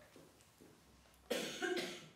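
A person coughing: a sudden, loud double cough about 1.3 seconds in, after a quiet stretch.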